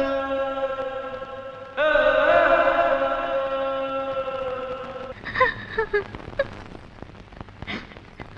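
Film background score of long held, chant-like notes: one note fades away, a new one swells in about two seconds in with a slight waver, then cuts off suddenly about five seconds in, leaving only faint short sounds.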